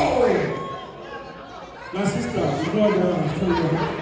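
Guests' voices chattering and calling out, with one voice sliding down in pitch in the first half second and another voice carrying on loudly from about two seconds in.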